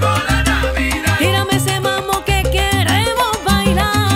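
Salsa music: a band of piano, bass, Latin percussion and horns playing a Christmas salsa with a steady bass line.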